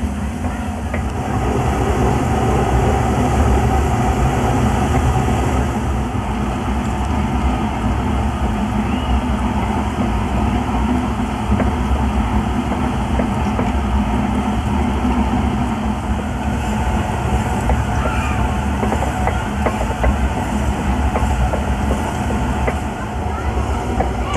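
1874 Lidgerwood two-cylinder single-drum steam hoist running steadily under steam, its engine clattering with a constant hiss of escaping steam.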